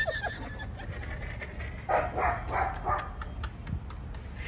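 A man laughing hard in about four short, pitched bursts around the middle.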